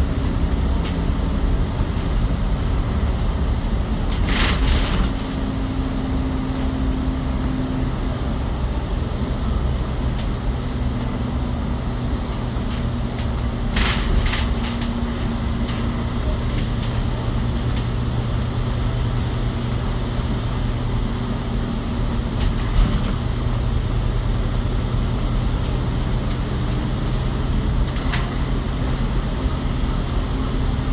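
Inside an ADL Enviro500 MMC double-decker bus with a Cummins L9 Euro 6 straight-six diesel, running steadily at speed: a continuous engine and road drone with low steady tones. Two brief bursts of hiss cut through, about four seconds in and again about fourteen seconds in.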